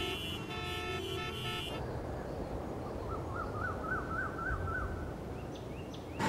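Outdoor traffic ambience: car horns sound together for the first couple of seconds over a steady hum of traffic. About three seconds in, a bird gives a repeated warbling call of about eight quick rising-and-falling notes, and a few short chirps follow near the end.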